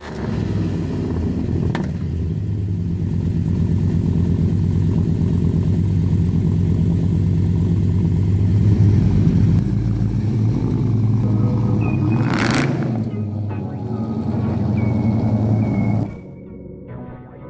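LS2 6.0-litre V8 swapped into a 1972 Oldsmobile 442, running at a steady idle with a regular low pulse from the exhaust. A brief rush of noise comes about twelve seconds in.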